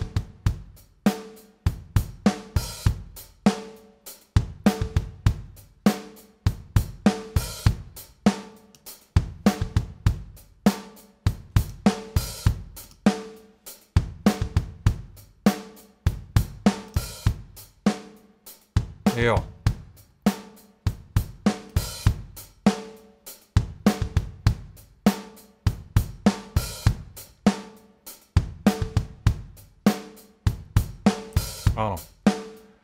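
A recorded drum kit plays back in a steady groove at about 100 beats a minute: kick, snare, hi-hats and cymbals in a repeating pattern. A heavily compressed parallel copy of the drums is being blended gently in underneath.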